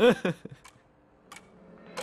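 A short spoken word, then near silence broken by two faint clicks, and a soft swell rising near the end that leads into music.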